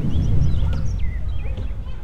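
Small birds chirping in short, scattered calls over a steady low rumble of outdoor background noise.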